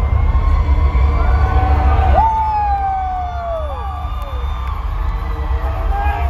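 Arena concert crowd cheering and screaming, single shrill voices rising and falling, the loudest a long falling call about two seconds in, over a steady low bass rumble.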